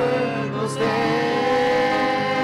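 Family group of adults and children singing a gospel song together into microphones, moving into a long held note about a second in.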